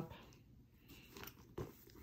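Faint handling sounds of a handbag and the wallets packed inside it: a few soft clicks and rustles, the clearest about a second and a half in.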